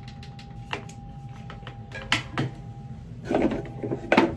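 A few soft clicks and knocks from a flat iron being handled and clamped on hair, over quiet room noise.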